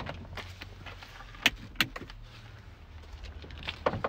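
Two sharp clicks about a third of a second apart, about a second and a half in: the van's dashboard switches for the LED beacons and work lights being pressed, with a few lighter handling clicks and a low steady hum underneath.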